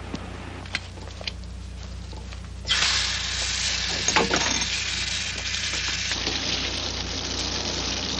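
A bathroom sink tap is turned on about two and a half seconds in, and water runs steadily into the basin, with a brief knock partway through.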